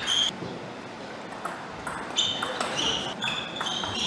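A table tennis rally: sharp clicks of the ball off bats and table, and, in the second half, several brief high-pitched squeaks of players' shoes on the court floor.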